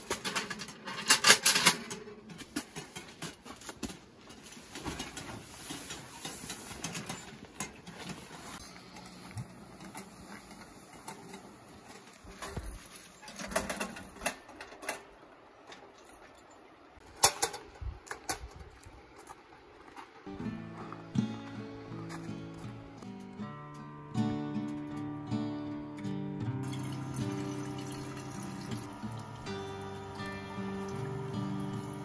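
Metal clanks and scraping from a small Winnerwell steel tent stove being cleaned out and its ashes tipped out, with sharp knocks about a second in and again near the middle. From about twenty seconds in, background music comes in.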